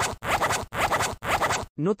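Glitch transition sound effect: a run of short, scratchy static bursts, about two a second, that cuts off sharply just before a voice begins.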